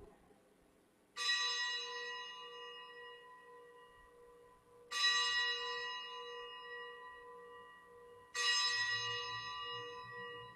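A consecration bell struck three times, about three and a half seconds apart, each strike ringing on and fading slowly. It is the bell rung at the elevation of the host during the Eucharistic prayer.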